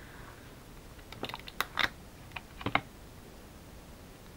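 Plastic Glue Dots roll dispenser clicking and tapping as it is handled to apply a glue dot and set down on the cutting mat: a run of sharp light clicks starting about a second in, in small clusters, ending before the last second.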